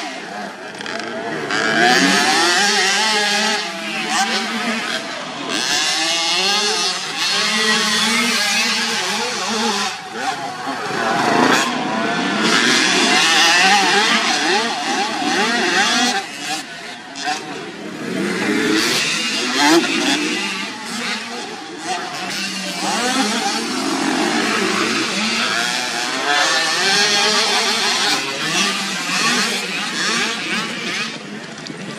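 Small mini motocross bike engine revving hard and easing off again and again, its pitch rising and falling with each burst of throttle.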